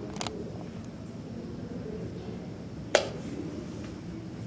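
A wooden chess piece is set down on the board with a light click just after the start. About three seconds in comes a sharper, louder click, the press of a digital chess clock's button, over a low steady background murmur.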